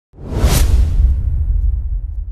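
A whoosh sound effect that swells quickly and peaks about half a second in, over a deep rumble that lingers as the whoosh fades.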